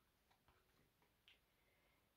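Near silence: room tone with a couple of very faint ticks.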